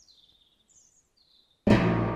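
Faint high-pitched bird chirps over near silence, then a film score cuts in suddenly near the end with a deep, sustained low note.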